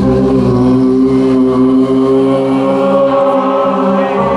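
Voices holding one long, steady "aaah" in a low, monk-like chant, a single sustained chord with no beat.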